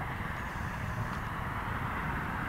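Distant aircraft overhead: a steady, low engine noise that sounds like a helicopter.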